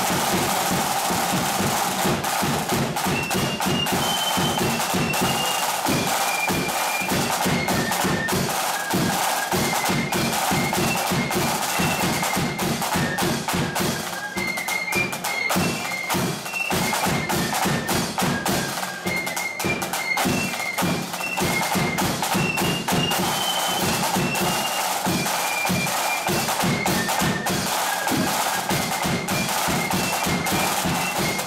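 Marching flute band playing: a high melody on flutes over rapid side-drum rolls and beats, with a bass drum underneath.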